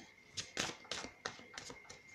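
Tarot cards handled and flicked through in the hand: a run of light, sharp clicks and snaps, about six in two seconds.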